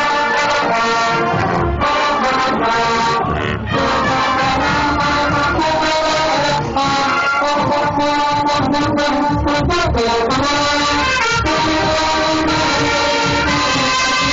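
High school marching band playing, brass instruments carrying the tune, loud and close.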